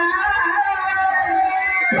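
Live Assamese Bihu music: dhol drums beating under a sustained melody.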